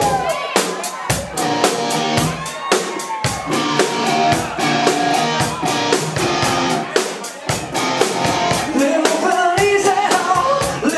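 Live rock band playing: a drum kit keeping a steady beat, electric guitar and a male singer. The drums come in right at the start.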